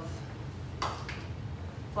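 A kitchen utensil set down with a single light knock about a second in, followed by a fainter tap, over a low steady hum.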